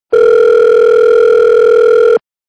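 Outgoing video-call ringback tone: one steady, loud electronic tone, the signal that the call is ringing at the other end and has not yet been answered.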